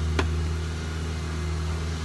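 Steady low engine hum, with one sharp click shortly after the start.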